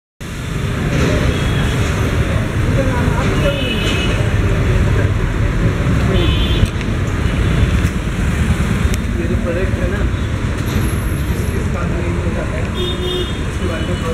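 Steady street traffic noise with engines, a few short horn toots, and people talking in the background.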